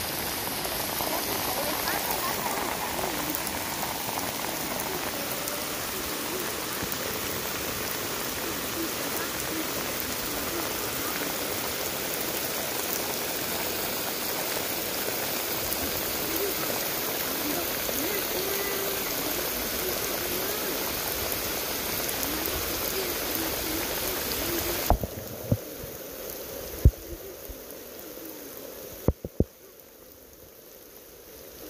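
Steady rain falling, a constant even hiss. About 25 seconds in it drops abruptly to a much lower level, and a few sharp knocks follow near the end.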